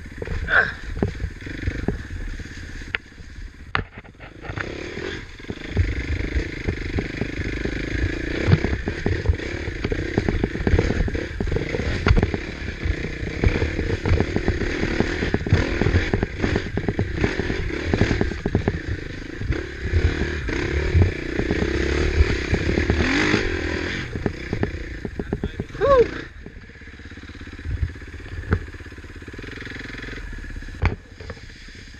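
KTM 450 XC-F single-cylinder four-stroke dirt bike engine working hard up a rocky climb, revving up and dropping off with the throttle, with rocks clattering and knocking under the bike. Near the end the engine drops back to a quieter, lower run.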